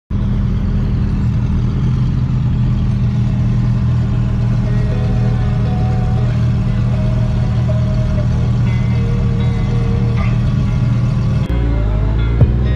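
Suzuki Hayabusa's inline-four engine idling steadily in traffic, a low, even hum heard from the rider's seat.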